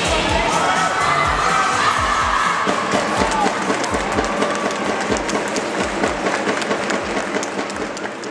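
Background music with a steady beat, mixed with a group of girls cheering and shouting together, fading near the end.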